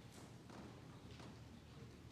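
Near silence: quiet room tone with a few faint footsteps on the floor.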